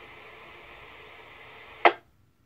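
Mobile two-way radio speaker giving a steady hiss as the GMRS repeater holds its carrier after a radio check. A short burst of squelch noise comes near the end, and then it cuts off suddenly as the repeater drops.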